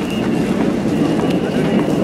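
Outdoor crowd noise: many voices chattering at once, with hurried footsteps.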